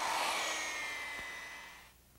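Handheld electric polisher with a round pad running on marble: a steady motor whine over the hiss of the pad on the stone, fading out toward the end.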